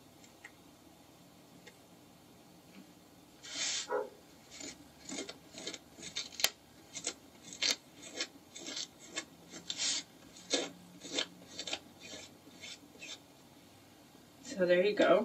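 A rubber cement eraser rubbed over watercolour paper to lift dried masking fluid, in short uneven scrubbing strokes about two a second. The strokes start a few seconds in.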